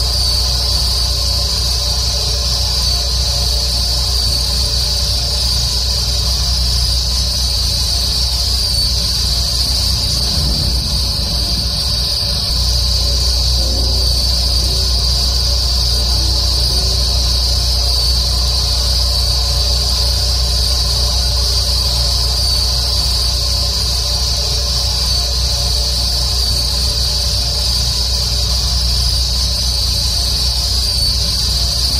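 Insects chirring in a steady, high-pitched drone over a constant low hum, which wavers and breaks up briefly about ten seconds in.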